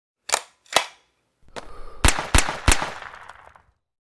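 Channel intro sound effects: two sharp clicks, then a rising rush and three loud gunshot-like bangs in quick succession, each with a short echoing tail that dies away.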